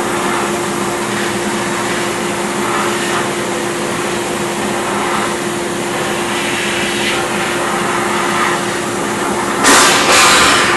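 Steel-shot blast cabinet nozzle blasting a cast waffle iron, a loud steady hiss of air and shot with a steady hum underneath. Near the end it briefly surges louder.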